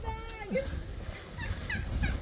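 Domestic chickens clucking. One drawn-out call at the start drops in pitch as it ends, then a few short, higher clucks follow in the second half.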